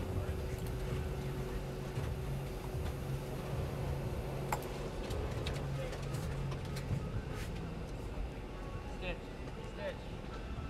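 Steady low hum of a large room, with faint, indistinct voices and a few soft clicks.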